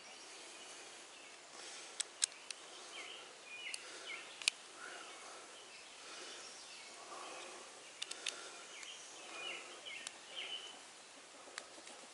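Quiet outdoor ambience with faint bird chirps, broken by a few sharp little clicks from a metal tool working the end of a green rubber hose, two close together about two seconds in and again about eight seconds in.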